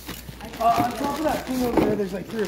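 Indistinct talking, starting about half a second in.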